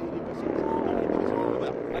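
Several motocross bike engines revving together as a pack races through a corner, their pitches rising and falling as the riders work the throttles.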